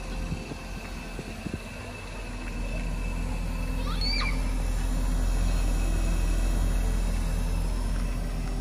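Mercedes-Benz 380SEC's 3.8-litre V8 idling steadily, heard at its twin tailpipes, getting louder from about two seconds in as they are approached. The exhaust has been freshly repaired of a leak. A bird chirps briefly about four seconds in.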